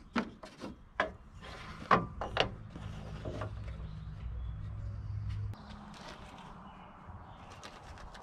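Wooden blocks being handled and set down on a work table, giving a few sharp knocks in the first two and a half seconds. A low steady hum runs underneath and stops about five and a half seconds in.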